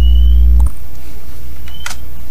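Low electrical hum, loud for the first part of a second and then dropping to a softer steady level, with a few faint short high chirps and a single keyboard key click near the end.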